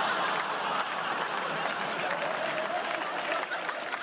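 Large audience applauding and laughing, the applause slowly tailing off toward the end.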